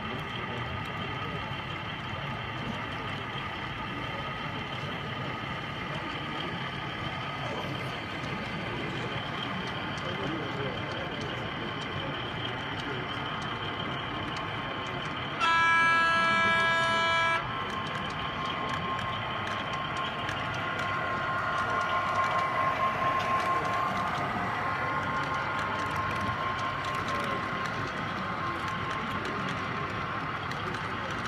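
Sound-fitted model Class 47 diesel locomotive running, its small speaker giving a steady engine drone, with one horn blast of about two seconds about halfway through.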